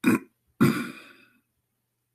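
A man making two short, rough throat sounds: a brief one, then a longer one that trails off.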